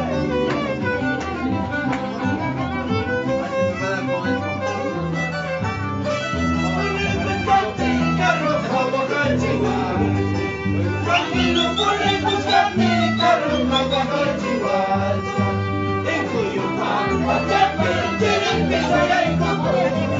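Live band playing a lively Andean huayno-style tune, a violin carrying the melody over changing low bass notes.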